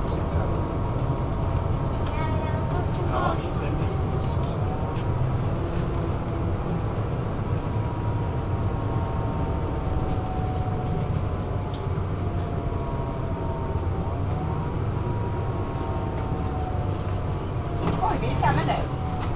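Interior of a city bus on the move: a steady low rumble of drivetrain and road, with a faint whine whose pitch slowly rises and falls as the bus changes speed.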